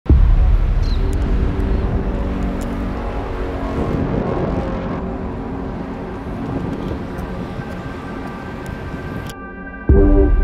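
A steady low rumble like traffic noise, with faint held musical tones beneath it, fading slowly. Near the end the rumble cuts off suddenly and a clean held chord of a music track takes over.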